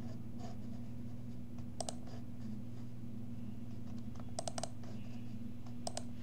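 Computer mouse clicks: a single click about two seconds in, a quick run of three a little past the middle, and one more near the end, as folders are opened in a file-save dialog. A steady low hum runs underneath.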